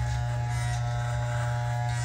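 Andis T-Outliner corded hair trimmer buzzing steadily as it is run over the scalp, shaving the hair skin-close.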